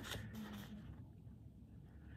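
Faint rustle of a diamond painting canvas in its clear plastic sleeve being handled, dying away after about a second.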